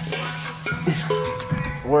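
Plastic bubble-wrap packaging crinkling and rustling as a new stainless exhaust pipe is handled, for about the first second and a half, over a low steady hum.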